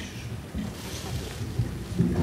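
Low, irregular rumble and bumping from microphone handling as a mic stand is adjusted and repositioned.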